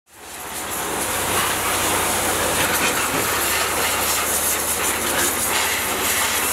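High-pressure washer jet spraying water onto a scooter: a steady hiss of spray with a low steady hum from the washer's pump motor underneath.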